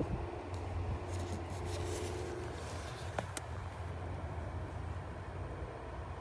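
A steady low hum, with one sharp click about three seconds in.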